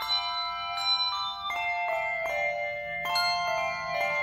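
Handbell choir ringing a piece: bells struck about twice a second, each chord ringing on and overlapping the next.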